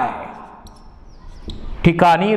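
Marker squeaking in short strokes on a whiteboard while a word is written, with a soft knock about a second and a half in.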